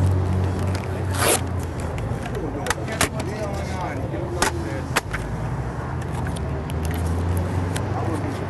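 Night street ambience: a steady low engine hum with faint voices in the background. Several sharp clicks and scrapes come through in the first five seconds.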